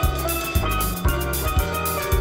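Background music with bass, drums keeping a steady beat of about two hits a second, and a bright, ringing melody.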